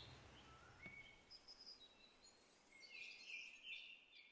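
Near silence with faint birds: scattered short chirps and whistles, coming thicker near the end.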